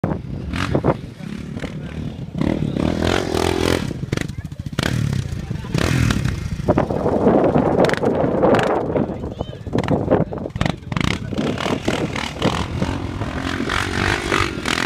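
Yamaha Raptor 660 quad bike's single-cylinder four-stroke engine revving up and down as it is ridden across soft ground some way off, with wind buffeting the microphone.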